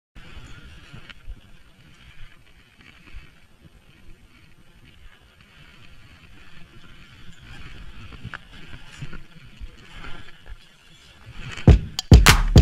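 Skis sliding and hissing through snow, with wind buffeting a GoPro's microphone in an uneven low rumble. Loud hip-hop music cuts in suddenly just before the end.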